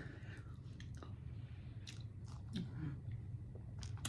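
Faint chewing of a mouthful of salad, with a few soft clicks scattered through.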